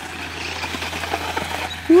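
Losi Promoto MX RC motorcycle drifting in a tight circle on gravel: its rear tyre sliding and scrubbing over the loose stones, a steady rough hiss.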